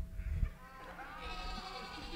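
Congregation members imitating a goat's bleat, faint and wavering, after a couple of soft bumps in the first half second.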